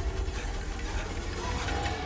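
Horror-trailer sound design: a sustained deep rumble under a hissing wash, with faint tones, held between two heavy hits.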